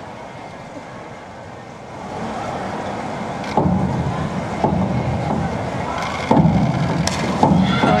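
Crowd murmur echoing around an indoor diving pool, swelling from about two seconds in, with a few sharp thumps from the springboard as the diver steps, hurdles and takes off, then her entry into the water.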